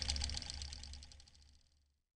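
Electronic sound effect from the credits soundtrack: a fast buzzing rattle over a low hum, fading away within the first second and a half, then silence.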